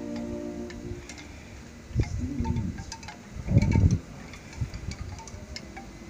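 Light, scattered chime-like tinkling, with low rumbling bursts about two seconds in and again around three and a half seconds in.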